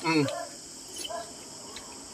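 A man's brief 'mm' while eating, then a low background with a steady, high-pitched insect chirring.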